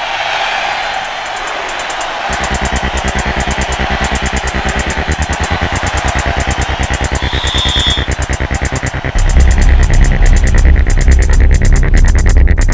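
Electronic theme music for the TV programme's closing titles. A steady pulsing beat comes in about two seconds in, and a heavy bass joins about nine seconds in, making it louder.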